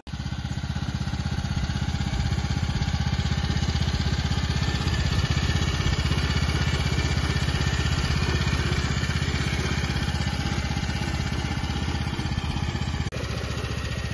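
Small engine of a Kubota walk-behind rice transplanter running steadily with a rapid, even low beat. The sound dips briefly about a second before the end.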